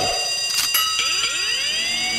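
Electronic synth passage of a K-pop track: several high steady tones held together with curving pitch sweeps arcing over them, and no bass or beat underneath.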